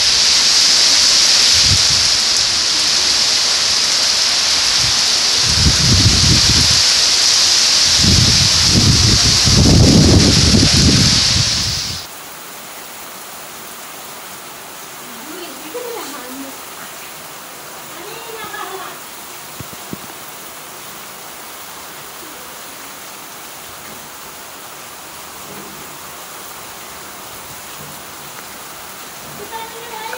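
Heavy storm rain pouring, with gusts of wind buffeting the microphone. About twelve seconds in, the sound cuts abruptly to a softer, steady rain hiss.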